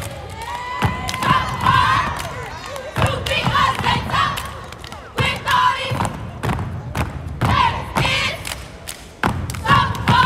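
Repeated thuds of a line of steppers stomping in unison on a gym floor during a stroll routine, with shouts and crowd yells over the stomps.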